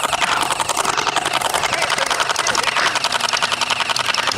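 Splatrball battery-powered gel-ball blaster firing one long full-auto burst: a fast, even rattle of shots.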